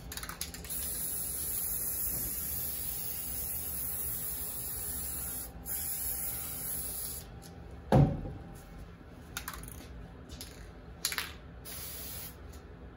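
Aerosol spray paint can hissing in one long spray, broken briefly about five and a half seconds in and stopping about seven seconds in. About a second later comes a single loud thump, followed by a couple of light knocks.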